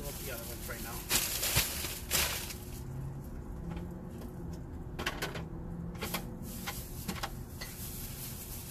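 Groceries being loaded into a car's cargo area: bags rustling and items being set down. The loudest rustles and knocks come about one and two seconds in, with a few smaller ones later.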